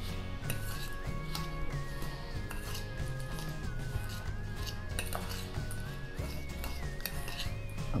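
Metal fork clinking and scraping repeatedly against a stainless steel mixing bowl while stirring dry ground walnuts and sugar together.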